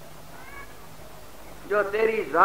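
A pause in a man's recorded speech: a faint even background noise with a brief faint high-pitched sound about half a second in, then his voice starting again near the end.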